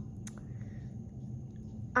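Low, steady room hum with one or two faint clicks shortly after the start, from clay beads being handled and slid onto an elastic bracelet cord.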